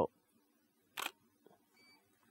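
A DSLR shutter firing once about a second in, a single sharp mechanical clack of mirror and shutter as one flash frame is taken. A faint short beep follows shortly after.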